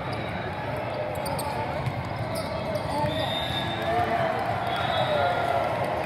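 Volleyball rally in a large sports hall: ball hits and sneaker squeaks on the court over a steady babble of players and spectators, with short high referee whistles about halfway through and near the end.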